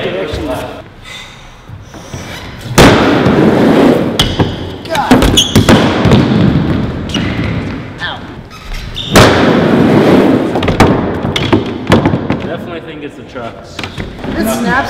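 A prototype carbon-fiber rod skateboard on a wooden ramp: two loud thuds, about three seconds in and again about nine seconds in, each followed by a second or so of wheels rolling on the plywood, with smaller knocks in between.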